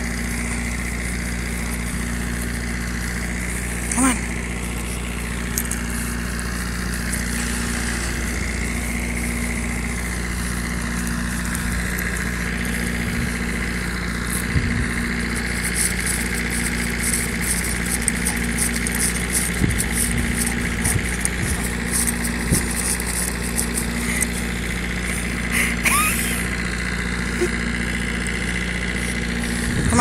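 A steady mechanical hum, like an engine running at a constant speed, with a few brief faint sounds and light clicking on top.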